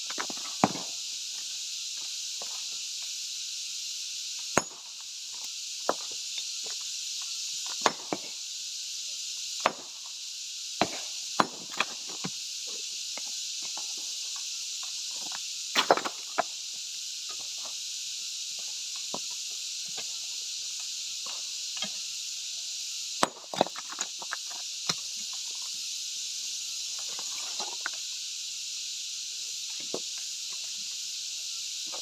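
Scattered sharp knocks and clinks of broken stone chunks and boots on loose rock rubble, at irregular intervals, over a steady high-pitched insect drone.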